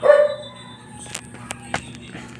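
A single short, loud bark-like call at the start, falling in pitch, followed by a few light clicks and taps. A steady electric-fan hum runs underneath.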